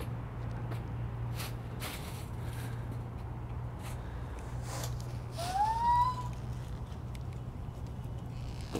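Footsteps crunching on dry leaves down stone steps over a steady low hum of city traffic. About two-thirds of the way through comes one short rising squeal-like tone.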